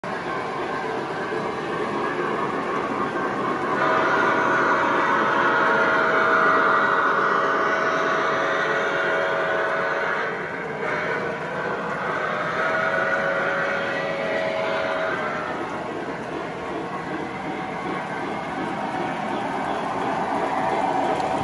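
O gauge model trains running on a layout: a steady rumble of wheels and motors on the track. A steady pitched tone is held for several seconds, twice.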